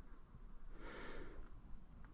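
Faint background with one soft breath of air close to the microphone, about a second in.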